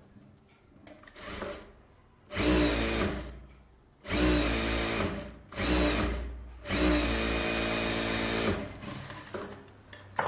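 Industrial sewing machine stitching in four runs of a second or two each, starting and stopping with short pauses between them, at a steady speed while it runs. Faint rustling of fabric being handled comes before the first run.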